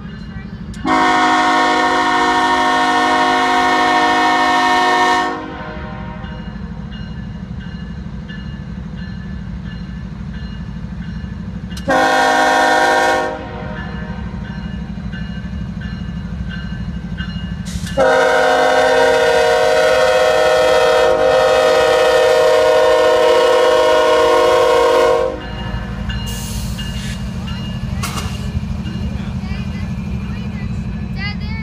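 Diesel freight locomotives sounding their air horn three times, long, short, then a longer blast, over the steady low rumble of the passing train.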